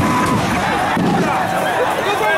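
Crowd noise: many voices calling and shouting over one another as people react to tear gas.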